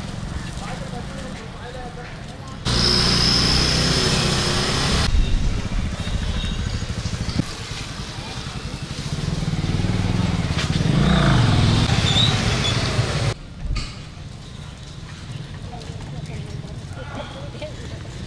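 Street ambience with a passing motor vehicle engine that rises and falls about halfway through. The background sound jumps abruptly in level a few times.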